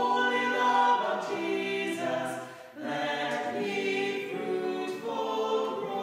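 A small group of four voices singing in harmony in long held notes, with a brief pause between phrases a little under three seconds in.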